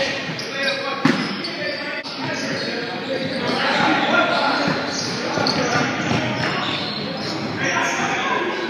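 Basketball being played in a gymnasium: a ball bouncing on the hardwood floor amid the voices of players and onlookers, with a sharp knock about a second in.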